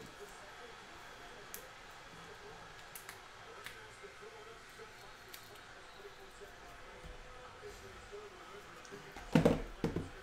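Quiet handling of trading cards, with a few faint clicks as they are flipped, then a loud knock and rustle near the end as a sealed cardboard hobby box is grabbed and set on the table.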